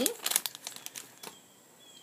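Crinkling of a plastic blind-bag packet being handled and opened by hand: a quick run of crackles in the first half second, then a few scattered ones.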